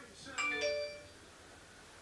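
A short two-note chime about half a second in, each note ringing briefly and dying away within about half a second.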